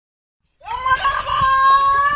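Silence for about half a second, then a rooster crowing: one long call that rises at the start, holds steady, and bends down at the end.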